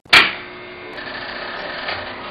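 A loud clunk at the very start, then the steady whirr of a jukebox's record-changer mechanism running, with a few faint clicks.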